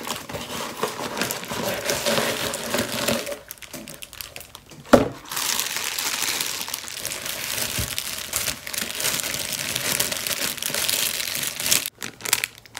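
Plastic packaging crinkling and rustling as a plastic-wrapped mailer is pulled open and a bag of plastic lures is handled, with a brief lull before a single sharp snap about five seconds in.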